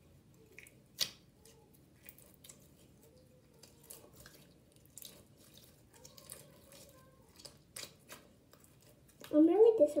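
Stiff slime being kneaded and squeezed by hand, giving scattered small wet clicks and pops, the loudest about a second in. A girl starts talking near the end.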